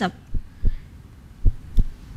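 Quiz-show suspense cue for thinking time: low heartbeat-like thuds, mostly in pairs, about once a second, over a faint hum.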